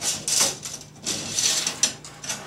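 Metal thumb screws being undone on the Big Eye Fresnel's frame to free its U-bar: two spells of scraping, rattling metal, with a sharp click near the end.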